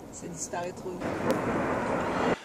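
Jet noise from a Patrouille de France Alpha Jet, a broad rushing sound that swells about a second in and keeps building as the aircraft flies its display.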